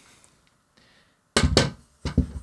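A folded aluminium video tripod set down on its side on a table: one dull thunk about a second and a half in, after near silence.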